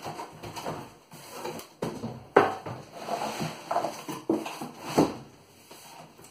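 A DeWalt DCV582 wet-and-dry vacuum being pulled out of its cardboard box: cardboard rustling and scraping, with sharp knocks about two and a half seconds in and again near five seconds.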